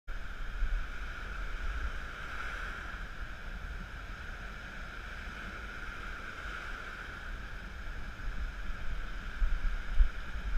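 Wind buffeting the camera microphone in low, uneven gusts over the steady wash of surf breaking on a sandy beach.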